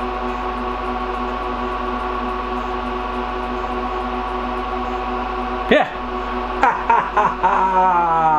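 Lenovo x3650 M4 rack server running during boot, its cooling fans giving a loud, steady whine at one unchanging pitch. A man's brief "yeah" and other voice sounds come over it near the end.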